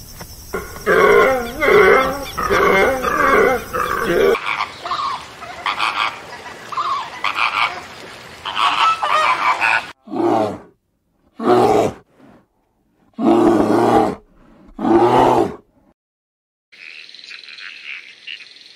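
A sequence of different animal calls: a run of rapid, repeated calls for several seconds, then four loud calls about a second long with silences between them. Near the end a high, steady chirring begins.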